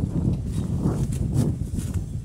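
Water buffalo grazing in dry grass: irregular rustling and tearing of the stalks, with a few sharp crackles in the second half.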